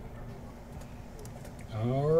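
Quiet steady room hum with a few faint clicks, then near the end a man's voice breaks in with a long syllable that rises in pitch.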